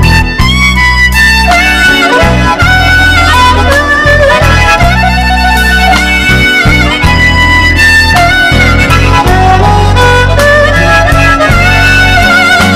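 Instrumental break in a slow blues song: a lead melody of held, bending notes with vibrato over a steady bass line, with no singing.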